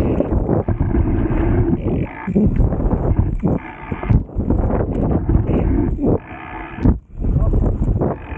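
A dirt jump bike ridden through a line of jumps on soft, boggy dirt: tyre and frame rumble with wind buffeting the camera's mic, broken by several drawn-out wordless groans from the rider, each about half a second long.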